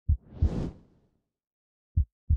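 Logo-reveal sound effect: two deep thumps, then a whoosh that swells and dies away by about a second in, and another deep thump at the very end.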